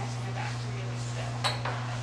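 Scoop stretcher clinking as one half is slid into place against the floor: a single sharp clink about one and a half seconds in.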